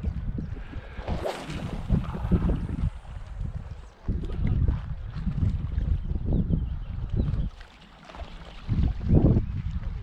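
Wind buffeting the camera's microphone in uneven gusts, a low rumble that eases off briefly near the eight-second mark.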